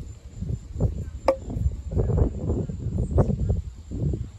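Handling noise from an aluminium bicycle seat post being turned over in the hand, with one sharp click about a second in. Insects keep up a thin, steady, high drone behind it.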